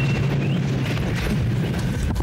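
Explosion sound effect of a starship taking weapons fire: a low boom that starts sharply and carries on as a rumble over a steady low hum.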